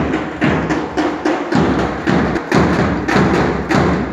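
A drum beating a steady march time, about two to three strokes a second. The beat stops near the end.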